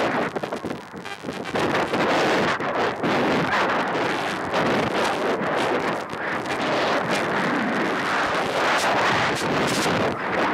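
Wind rushing and buffeting unevenly over the microphone of a camera riding on a model rocket in flight.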